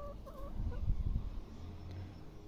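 Brown laying hens calling: a drawn-out pitched note at the start that wavers and breaks off about half a second in, followed by softer clucking with some low thumping underneath.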